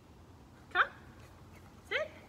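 Speech only: a woman giving two short, sharp commands to a dog, "come" and then "sit", over faint background noise.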